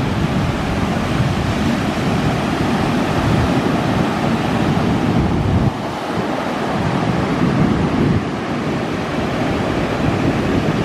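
Ocean surf breaking and washing up a sandy beach in a continuous rushing wash, with wind buffeting the microphone as a low rumble. The level dips suddenly twice, a little before six seconds in and around eight seconds in.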